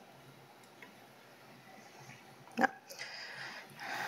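Faint room tone, broken about two and a half seconds in by one short, sudden noise at the presenter's microphone, followed by a soft hiss.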